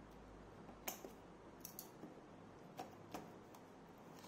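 Scissors snipping through a cardboard box sleeve: a handful of short, sharp snips, the loudest about a second in, all fairly faint.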